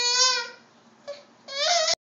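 A toddler's high-pitched vocal calls, made around a pacifier: a long held call at the start, a short faint one, then another near the end that cuts off abruptly.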